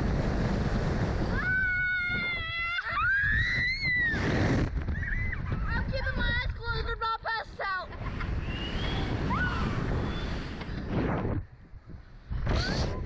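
Wind rushing over an on-board microphone as a slingshot ride flings its riders through the air, with a child's long high scream about two seconds in and shrieks and laughter a few seconds later. The wind noise dips briefly near the end.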